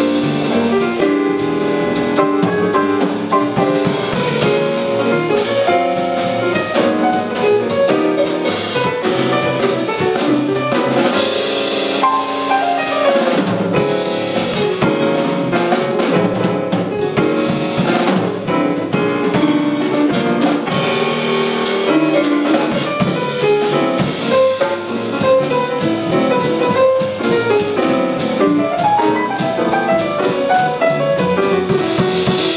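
Jazz piano trio playing live: grand piano, upright bass and drum kit with cymbals, all three going together at a steady loudness.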